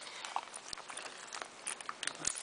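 Faint, irregular light clicks and taps, a dozen or so scattered through the two seconds.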